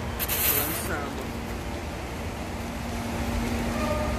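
Train-platform background noise: a steady low rumble with a steady hum running under it, and a brief loud hiss about a quarter of a second in. Faint voices in the background.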